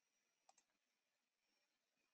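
Near silence, with a faint double click about half a second in.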